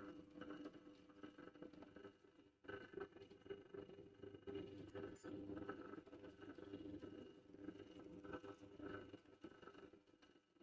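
Bench pillar drill running with a faint, steady motor hum while it bores holes in wood, the level swelling and dipping as the bit is fed down.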